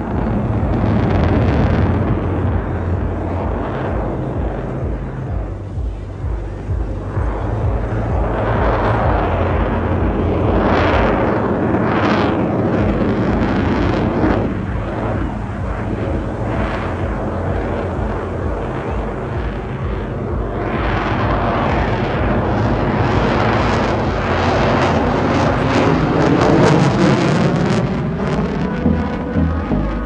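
Fighter jet engine roar, loud and sustained, swelling and fading in waves as the jet flies past, loudest near the end.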